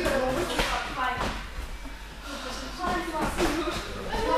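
Indistinct talk from several voices in a large hall, with a couple of sharp smacks of punches landing on hand-held focus pads about half a second and a second in.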